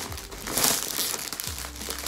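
Clear plastic wrapping film around a bouquet crinkling as the bouquet is handled and turned, loudest about half a second in.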